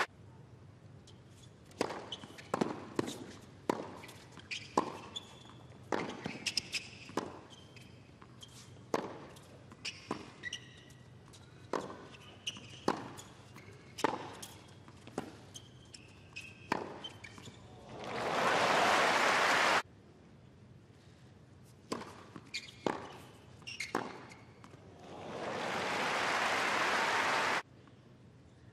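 A tennis rally on a hard court: irregular sharp pops of rackets striking the ball and the ball bouncing. After each of two points, crowd applause and cheering swells up and is cut off abruptly.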